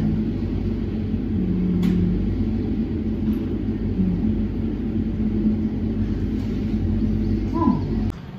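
A steady low rumble with a faint hum in it, which drops away suddenly at the very end.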